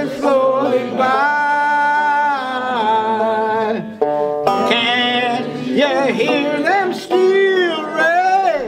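Five-string banjo strummed as accompaniment under singing of a folk song's chorus, with a short break in the singing about halfway through.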